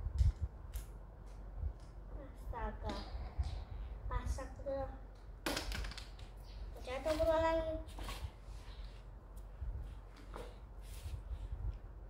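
Small plastic toy pieces clicking and tapping as a child's hands fiddle with them, with a few brief wordless vocal sounds from the child.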